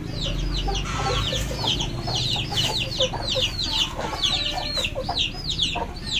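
Chickens: chicks peeping rapidly and continuously in many overlapping high, falling peeps, with a hen clucking from about a second in.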